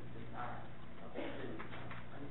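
Indistinct, low voices over a steady electrical hum.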